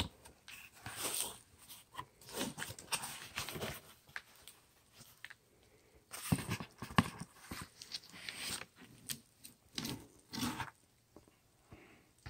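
Cardboard box and plastic wrapping being handled: irregular scraping and rustling, with sharper knocks about six and seven seconds in.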